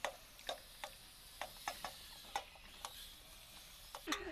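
Faint, irregular clicks and ticks, about two a second, from hens pecking and scratching at the ground as they forage.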